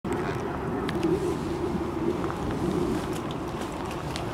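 Steady outdoor traffic hum with a few faint, short high ticks.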